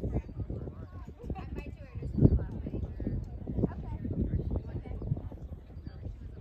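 A horse cantering on sand arena footing, its hoofbeats a run of dull thuds, with one loud thump about two seconds in.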